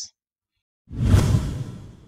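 Whoosh transition sound effect: a sudden rush of noise about a second in, loudest at its start, then fading away over the next second.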